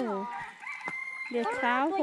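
People talking. In the quieter middle there is a faint, steady high-pitched call lasting about a second.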